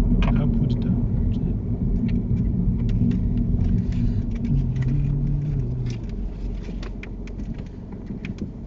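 Car engine and road noise heard from inside the cabin as a car drives along. The engine note changes to a lower pitch about four and a half seconds in, and the sound grows quieter over the last couple of seconds as the car eases off.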